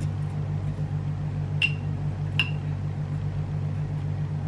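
Wooden chopsticks tapping against a glass jar: two sharp, ringing clinks, about a second and a half in and again under a second later, over a steady low hum.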